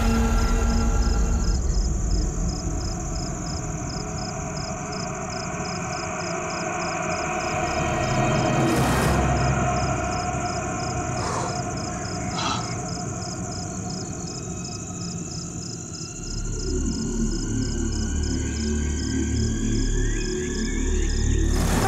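Eerie suspense background score: a sustained drone under a regular pulsing high tone, with slowly rising tones in the second half and a deep rumble swelling in about three-quarters of the way through.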